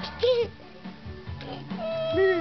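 Background music with steady held notes; about a quarter second in, a baby gives one short, high squeal that rises and falls in pitch.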